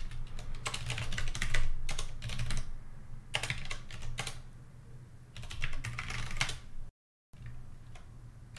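Typing on a computer keyboard in three quick runs of keystrokes, with a brief dropout of the audio near the end.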